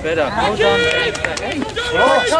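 Several voices shouting overlapping calls across a football pitch, some held on one pitch for a moment, with no clear words.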